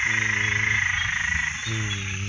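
A dense chorus of frogs calling at night, a steady high-pitched trilling, with two short low-pitched sounds over it, the second being a man speaking briefly near the end.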